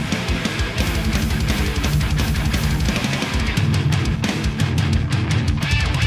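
A heavy metal band playing live: a drum kit hit in rapid strokes with crashing cymbals over guitars. The drums are heard close up, from right beside the kit.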